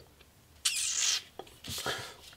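Pencil lead scratching across paper in one stroke of about half a second, starting a little over half a second in, then a shorter, fainter scrape of hand and pencil on the paper near the end.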